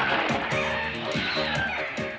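A cartoon giant lizard's screeching roar, rising and falling, over background music with a steady beat.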